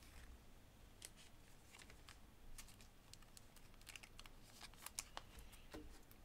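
Faint, scattered clicks of trading cards being handled and slid against one another in the hands, with a few more clicks in the second half, over near-silent room tone.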